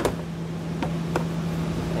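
Plastic underbody side panel being worked free by hand: a sharp snap at the start, then two faint clicks about a second in, over a steady background hum.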